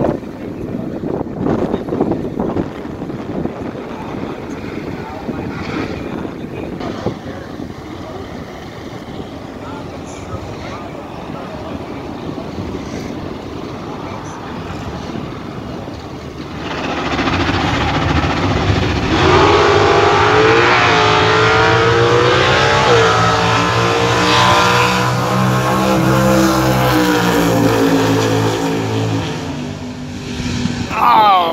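Drag-race cars rumbling at the start line after a burnout while they stage. About seventeen seconds in they launch: two engines at full throttle, accelerating down the strip, their pitch climbing and stepping back down at each gear change, then fading as the cars near the finish.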